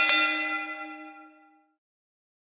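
Alarm bell signalling the end of the countdown. Its last quick strokes land right at the start, then the ringing fades away over about a second and a half.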